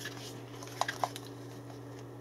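Two faint clicks about a second in from a CM Storm Pulse-R gaming headset being handled as its headband is adjusted, over a steady low hum.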